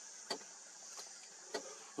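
Faint steady high hum of insects in the grassland, with three soft ticks about half a second apart.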